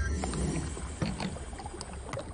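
Animated sound effect of glowing green liquid draining out of a glass canister: a low churning rumble with scattered small clicks.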